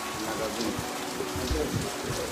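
Steady rain falling on concrete and tiled surfaces, an even hiss.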